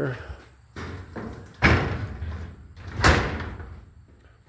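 The hinged doors of a metal storage shed being pulled shut, with two sharp bangs of sheet metal about a second and a half apart, the second slightly louder.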